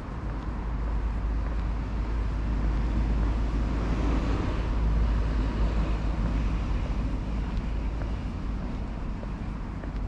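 Outdoor wind rumbling on the microphone, with a broad rushing noise that swells to a peak about halfway through and then eases off.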